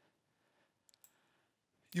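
Two faint computer mouse clicks in quick succession about a second in, against otherwise near-silent room tone.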